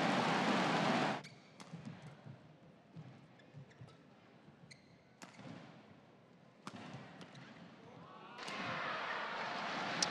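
An arena crowd cheering and clapping for about the first second, cutting off abruptly. Then, in a hushed hall, a badminton rally: several sharp racket hits on the shuttlecock, a second or so apart. Crowd noise rises again near the end.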